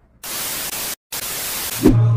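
TV static sound effect: even white-noise hiss in two bursts with a brief silent break between them, cutting off near the end.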